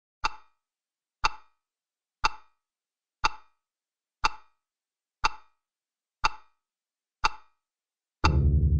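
A sharp, clock-like tick repeated evenly once a second, eight times, with silence between the ticks.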